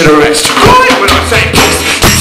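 Live band music: acoustic guitar strummed with a drum kit played with sticks, and a man's voice singing into the microphone.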